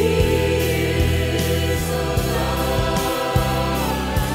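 A mixed choir of men and women singing in harmony over a backing track with a steady beat.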